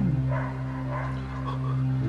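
Dogs barking faintly in the distance over a steady low drone.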